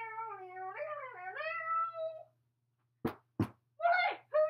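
A long, high, wavering wail lasting about two seconds, dipping and rising in pitch, then two sharp clicks about three seconds in and the start of another wail near the end.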